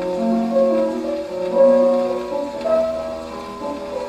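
A pianola (player piano) plays a short passage in which the melody stands out clearly while the arpeggiated accompaniment is kept in proportion, a demonstration of its graduated-accompaniment feature. It is heard from an early acoustic 78 rpm gramophone record, with surface noise under the notes.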